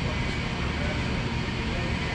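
Steady low rumble of warehouse background noise, with no distinct event standing out.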